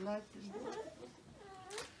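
An elderly person crying: a high, wavering sob right at the start and a longer falling sobbing cry near the end.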